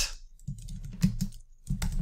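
Keystrokes on a computer keyboard, typing in short bursts of a few clicks at a time.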